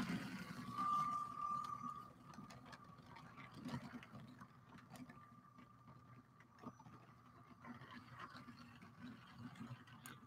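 Faint whine of LEGO electric train motors running on plastic track, coming up twice as a train passes, over a low steady hum. Scattered light clicks of computer keys and a mouse.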